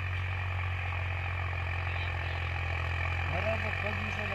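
Tractor engine running steadily under load, pulling a rotavator through a field, a continuous low drone with a rushing noise above it. A man's voice starts near the end.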